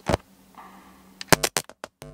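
A single click, then a quick run of sharp clicks and knocks from an audio cable and jack plug being handled and plugged in, cut off abruptly.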